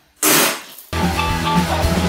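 A sudden loud noisy burst about a quarter second in, fading within half a second, then loud rock music with guitar starting about a second in.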